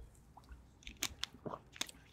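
A man taking a drink close to a microphone: a handful of small, quiet mouth and swallowing clicks in the second half.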